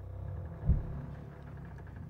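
Horror-film sound design: a low rumbling drone that swells, with one deep booming hit just under a second in.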